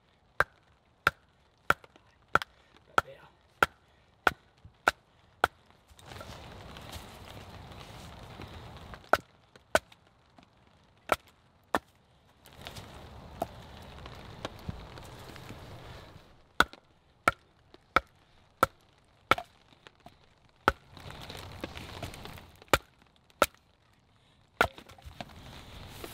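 A wooden baton hitting the spine of a survival knife, driving it through pine to split it (batoning). The knocks come in runs of about one and a half a second, with stretches of rustling between the runs.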